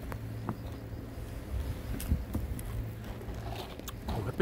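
Steady low hum of street traffic, with a few faint clicks.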